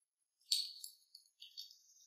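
A bright, high jingling shimmer, like a sparkle sound effect: a sharp jingle about half a second in, a few quicker jingles after it, and a thin ringing that fades away.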